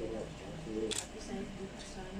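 People talking quietly in a room, with one short, sharp click about a second in.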